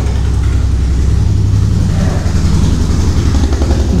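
A loud, steady low engine rumble with a fast, even pulse.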